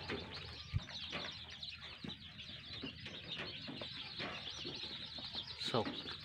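A large brood of young local-breed (desi) chicks peeping, a dense chorus of many overlapping high chirps, with a single knock just under a second in.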